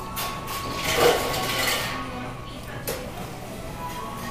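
Restaurant background music and indistinct chatter, with a loud noisy burst of clatter or rustle about a second in and a short sharp click near the end.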